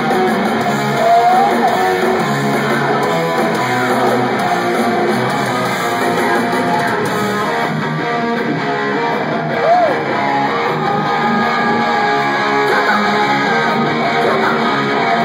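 A live rock band playing at full volume, electric guitars to the fore over bass and drums, picked up from the audience in a theatre.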